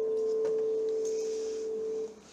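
The last note of a piece of music held as one steady, pure tone, stopping right at the end.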